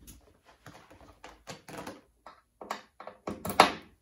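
A series of clicks and knocks from a guitar cable being handled and its jack plug pushed into the amp's input, the loudest clack about three and a half seconds in.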